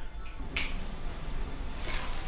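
Two sharp clicks, about half a second in and near the end, over a steady low hum.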